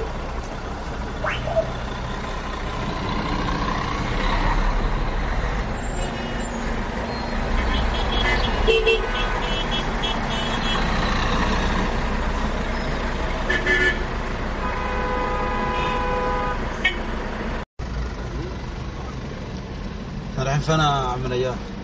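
Road and engine noise heard from inside a car crawling through dense city traffic, with several short car horn toots from the surrounding vehicles and a longer held horn tone near the end. The sound cuts out for a split second shortly before the end.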